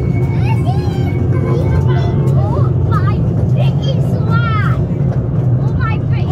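Steady low rumble of a miniature railway train running along its track, heard from a passenger carriage. Voices are heard over it now and then.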